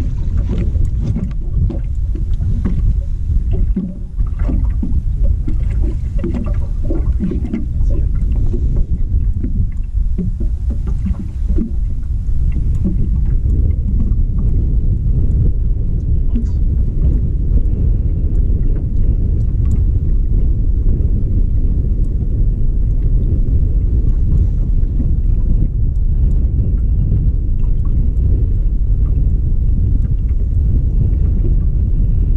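Wind rumbling on the microphone over choppy water lapping and slapping against an aluminum boat's hull, with irregular knocks and splashes through the first dozen seconds before it settles into a steady rumble.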